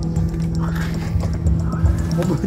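Background music with a steady low drone and a loose low beat, under a brief laugh.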